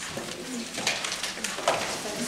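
Meeting-room bustle: people shifting and moving things at a table, with short knocks and rustles, the sharpest about three-quarters of the way through, over low murmured voices.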